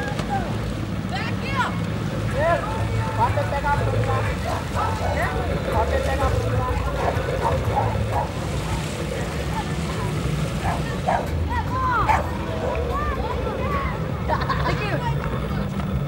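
Children's voices shouting and calling in short bursts over the water, over a steady low rumble.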